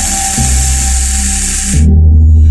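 Film soundtrack music of deep droning bass tones that shift pitch every second or so, overlaid with a loud, steady hiss that cuts off suddenly near the end.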